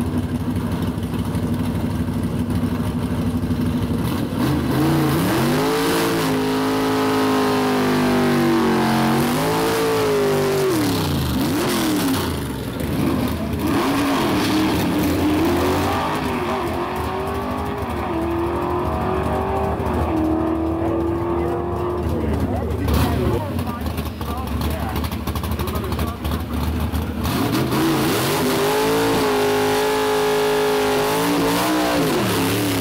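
Chevy II gasser drag car's engine idling at the start line, then revving and launching down the drag strip, its pitch climbing and falling several times through the gear shifts as it pulls away. Near the end another gasser's engine revs up close by.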